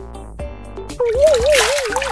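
Background music with a steady beat; about a second in, a loud splash of water poured from a mug over a bather's head, with a wavering, warbling tone laid over it.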